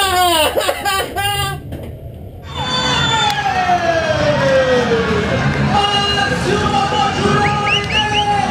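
Excited shouting voices, then after a sudden change a crowd of people yelling and cheering in celebration. One long drawn-out yell falls in pitch over a couple of seconds, over a steady low rumble.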